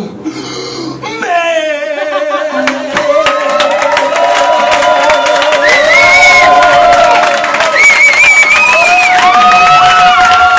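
Audience cheering, whooping and applauding right after a song ends. Shouts and high whoops pile up over rapid clapping and grow louder from about three seconds in.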